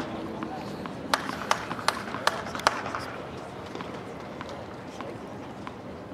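Tennis ball bounced on a hard court before a serve: five sharp knocks about 0.4 s apart, starting about a second in.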